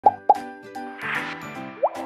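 Sound effects of an animated intro over light music: two quick pops right at the start, a soft whoosh about a second in, and a short upward swoop just before the end.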